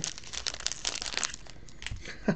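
Foil trading-card pack wrapper crinkling as hands handle it: a rapid crackle for about the first second and a quarter, then fainter rustling with one sharper click near the end.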